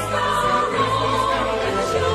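A Christmas song with a choir singing held notes over instrumental backing.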